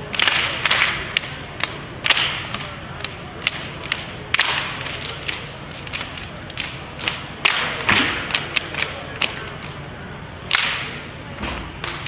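Sharp percussive slaps and thuds in an irregular pattern, some hits coming in quick clusters with a brief noisy tail, the kind made by hands slapping drumheads or bodies and feet striking stone paving.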